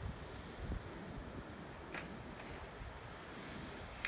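Wind on the microphone outdoors: a low, uneven rumble under a soft, steady hiss.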